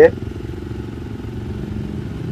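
Motorcycle engine idling steadily, heard from the rider's seat.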